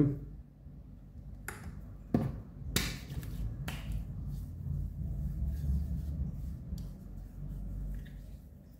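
Palms smacking together to spread aftershave lotion: a lighter tap, then three sharp slaps a little over a second apart between about two and four seconds in. Softer, low rubbing of the hands and skin follows.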